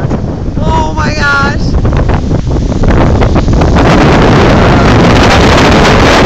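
Strong gusty storm wind buffeting the camera microphone in a low, rumbling rush that grows louder about three seconds in.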